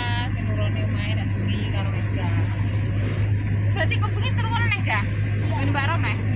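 Steady low drone of a moving car, engine and road noise heard from inside the cabin, with people's voices talking over it.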